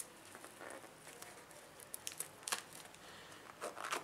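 Faint handling sounds of a latex balloon filled with shaving cream being twisted and tied into a knot by hand: soft rubbing of the rubber with scattered small clicks.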